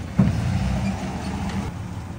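Chevrolet Silverado pickup's engine running as the truck rolls slowly forward into a driveway.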